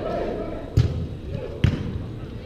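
Two sharp thuds about a second apart, the first a little under a second in and the second near the end, with players' voices calling across the pitch.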